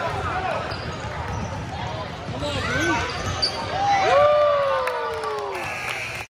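Basketball game on a hardwood gym floor: sneakers squeaking in many short squeaks, with a longer squeak falling in pitch about four seconds in, over a ball bouncing and people's voices in the gym.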